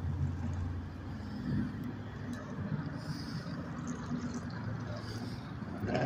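A car engine idling with a low steady hum, over the even background noise of an outdoor lot.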